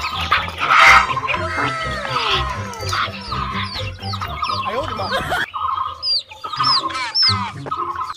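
A flock of young chicks peeping, many shrill, short, falling peeps overlapping in quick succession, with some lower calls mixed in.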